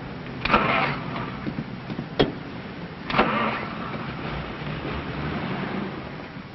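A car engine running, with two surges of noise about half a second and three seconds in and a sharp click between them.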